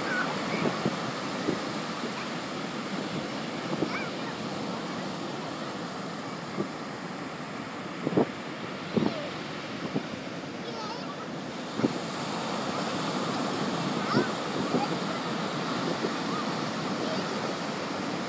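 Ocean surf breaking and washing steadily on a beach. A few short knocks stand out against it around the middle.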